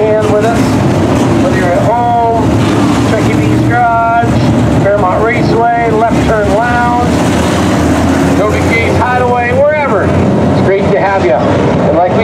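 Several Sport Mod dirt-track race cars running hard as the pack passes, their V8 engines making a continuous loud drone with engine notes rising and falling as the cars go by.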